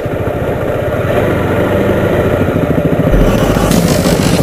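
Motorcycle engine running steadily under way, heard from on the bike, its firing pulses coming through as an even low beat.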